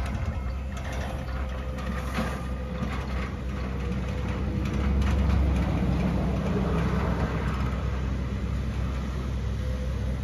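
Genie GS-2032 electric scissor lift driving across pavement: a steady low hum from its drive with a faint thin whine over it, swelling slightly about halfway through.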